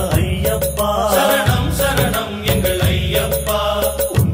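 Tamil Ayyappan devotional song: a man singing over instrumental accompaniment with a steady beat.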